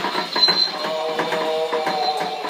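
Animated Halloween ghoul prop set off, its motor and gears clicking rapidly as it moves, with a steady held tone from its built-in sound effect.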